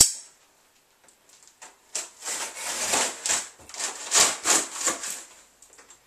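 A cardboard shipping box being opened with a knife: the blade slits and rips its packing tape in a run of irregular scraping strokes that starts about two seconds in. A single sharp click comes at the very start.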